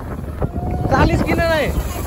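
Wind rumbling on the microphone of a moving motorcycle, with a voice calling out in a long, gliding shout about a second in.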